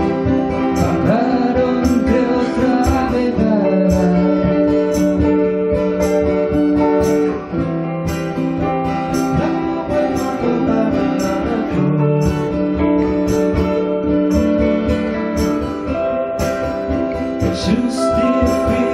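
A live folk-pop band of several acoustic guitars playing together, strummed chords over a steady rhythm with sustained melody notes on top.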